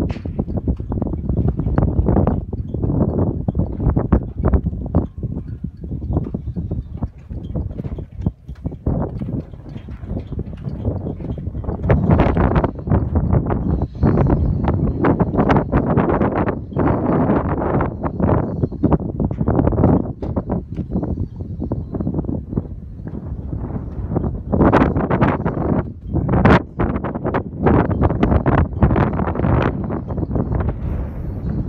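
Wind buffeting a phone's microphone in uneven gusts, a loud low rumble with many short surges.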